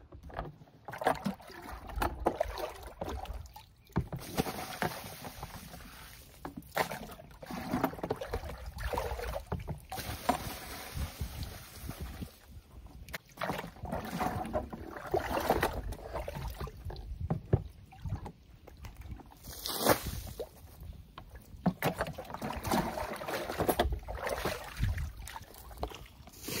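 Water sloshing and splashing as a bucket is dipped into a horse water trough and bailed out, in repeated, uneven bouts.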